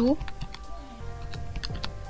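Light clicks of keys being pressed, a few sparse taps and then a quicker run in the second half, as a result is worked out during a pause in speech.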